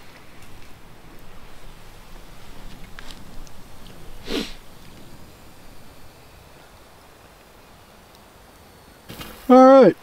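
Quiet campfire with faint crackles and light clicks of a knife working at a wire grill grate, and one short sniff about four seconds in.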